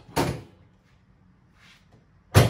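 A single sharp clunk about a quarter second in, just after a softer click, fading quickly.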